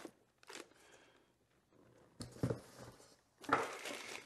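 Rustling and crinkling of packing material and cardboard as parts are handled in a box, in a few short bursts.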